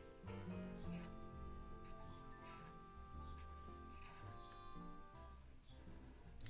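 Quiet background music with long held notes, under faint rubbing strokes of a felt-tip marker drawing on paper.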